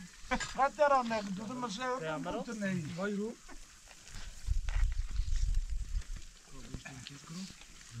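Men's voices for the first few seconds over faint sizzling of food cooking on an open fire, then a low rumble for about a second and a half near the middle.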